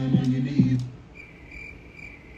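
A hip-hop track with a deep, steady bass note and a beat plays and cuts off abruptly about a second in. A cricket then chirps steadily, about three short high chirps a second, in the quiet that follows.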